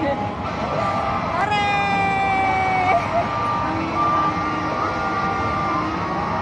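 Electronic tones from amusement-arcade machines, long held beeps that change pitch now and then, over the steady din of a busy arcade.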